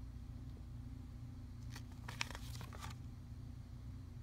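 A picture book's paper page being turned: a brief papery rustle about two seconds in, over a steady low hum.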